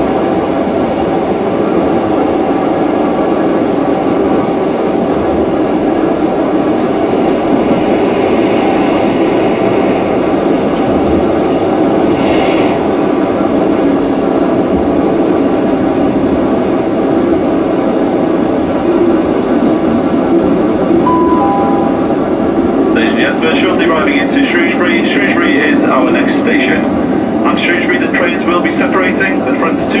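Interior of a Class 158 diesel multiple unit drawing into a station: a steady engine and running drone, with a brief hiss about twelve seconds in. About two-thirds of the way in, a two-note falling chime sounds, and an automated announcement follows over the train's speakers.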